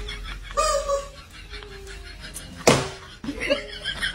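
Laughter in the first second, then a single sharp smack about two and a half seconds in, the loudest sound here: a swung leather belt striking.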